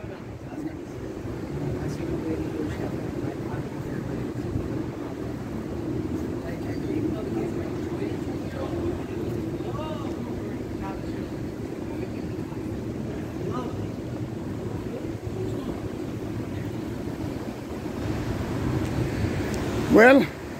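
City street traffic ambience: a steady low hum of car engines and tyres, with faint voices in the distance once or twice.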